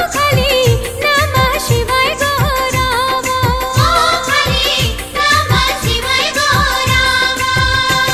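A Hindi devotional song, a Shiv bhajan: melodic, wavering vocal and instrumental lines over a steady, regular drum beat.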